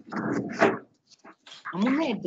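A person's voice heard indistinctly over a video-call connection, in two short stretches with a brief gap between them.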